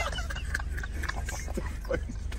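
Steady low hum of a car's engine heard inside the cabin, with faint voices over it.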